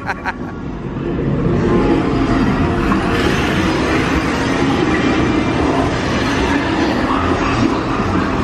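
Steady rushing, rumbling noise inside the Mickey & Minnie's Runaway Railway dark ride, taking over as the ride's music dies away about a second in.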